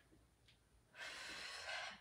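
A woman taking one long, audible breath of about a second, during exertion at a resistance-band squat, after about a second of near silence.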